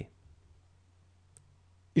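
Near silence between spoken words: a faint steady low hum with a few tiny clicks, one just over a second in.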